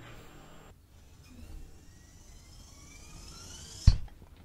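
A rising whoosh sound effect, several pitches climbing together for about three seconds, ending in a sudden deep boom just before the end.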